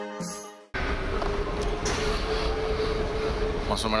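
Background music fading out and stopping under a second in, followed by the steady noise of an airport train platform, with a steady hum tone running through it.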